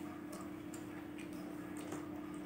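Mandarin orange segments being pulled apart by hand, giving a few small, irregular clicks and crackles of peel and membrane over a steady low hum.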